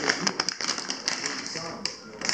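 Plastic packaging being handled: a stiff plastic pouch crinkling, with many quick taps and clicks as it is picked up.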